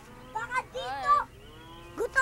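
A person's wordless, drawn-out vocal cries with the pitch bending up and down, twice, followed by a fainter low rising moan near the end.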